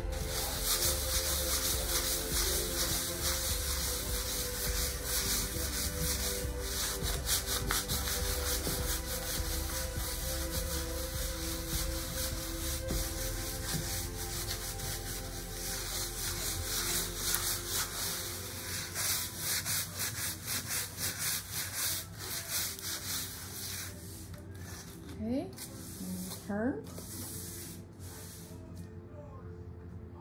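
Sanding block rubbed back and forth over a gessoed aluminum panel, wet-sanded with water to smooth the gesso: a steady, fast rasping that thins out after about 24 seconds into a few separate strokes.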